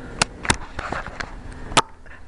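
Plastic knife cutting into a frozen sweet potato pie: three sharp clicks with some scraping between them.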